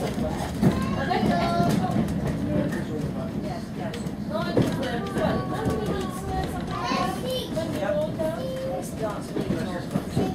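Steady low rumble of a moving railway carriage running along the line, with a few short knocks, under the indistinct chatter of passengers.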